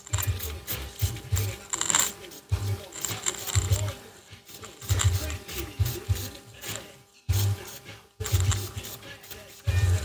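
A small hand spray bottle of surface prep being worked against a plastic fuel tank: irregular clicks and knocks with a few short spray hisses, and low thuds of handling close to the microphone.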